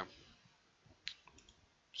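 A few faint computer mouse clicks, the clearest about a second in, over quiet room tone.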